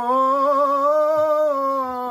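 Unaccompanied male chanting of religious verse, holding one long sustained note that wavers slightly in the middle.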